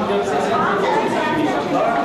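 Several voices talking over one another in a steady babble of chatter.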